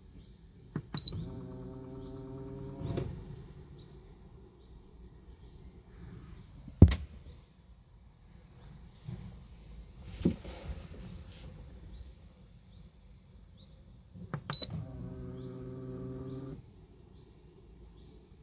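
The autopilot's hydraulic pump motor running for about two seconds, twice, each run just after a short high beep. This is the NAC-2 computer driving the pump at a low test voltage during VRF rudder calibration. A single sharp knock comes about seven seconds in, and a lighter one near ten seconds.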